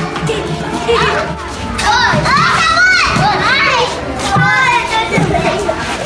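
A group of young children shouting and squealing excitedly as they play together, high voices overlapping throughout.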